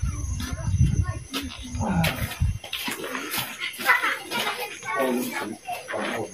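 Men talking in conversation, with a low rumble under the first couple of seconds.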